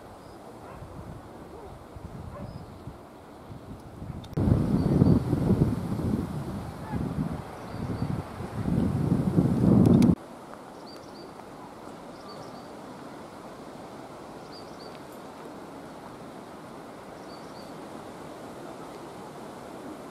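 Wind buffeting the camera microphone in irregular gusts, a loud low rumble that cuts off abruptly about ten seconds in. After it comes a steadier, quieter wind hiss with a few faint high chirps.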